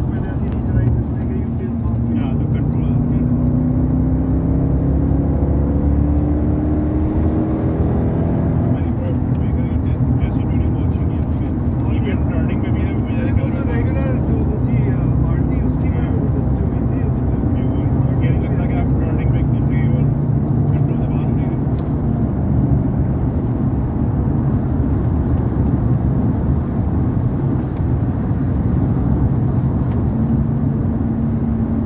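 Supercharged 6.2-litre Hemi V8 of a Dodge Durango SRT Hellcat heard from inside the cabin. It pulls up through the revs in the first several seconds, its pitch rising, then cruises steadily with a constant low rumble and road noise.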